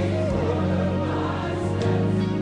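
Gospel music with a choir singing over a steady bass line; a wavering lead melody fades out less than a second in.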